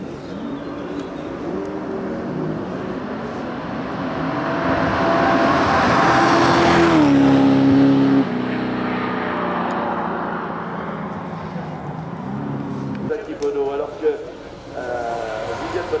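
Mercedes-Benz 500 SLC Group 2 race car's 5.0-litre V8 engine at racing revs as the car climbs past. Its note rises to its loudest about seven seconds in, drops in pitch about a second later, and keeps rising and falling across several short shots.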